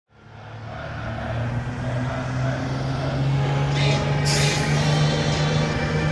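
Heavy vehicle engine running with a steady low hum, fading in from silence, with a short burst of hiss about four seconds in, like an air-brake release. Faint music runs underneath as a track intro.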